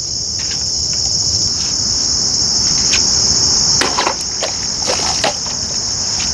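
A steady high-pitched chorus of early-morning insects, with a few sharp clicks and knocks about four and five seconds in as a heavy machete slices through a plastic water bottle on a wooden stump.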